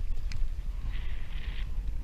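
Spinning reel's drag slipping in a short rasping burst about a second in as a large stingray pulls line, over a steady rumble of wind and water on the microphone.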